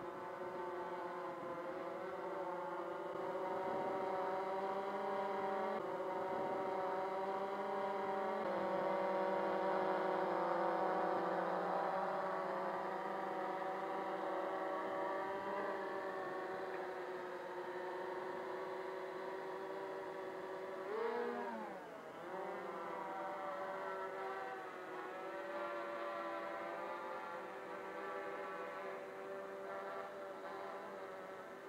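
Motors and propellers of a Ideafly MARS 350 quadcopter circling overhead, a steady multi-toned buzzing whine. Its pitch shifts in small steps a few times as the height is adjusted, and a brief swoop in pitch comes about two-thirds of the way through.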